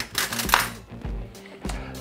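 Steady background music, with a brief metallic clink and scrape of a fork against a ceramic bowl about half a second in.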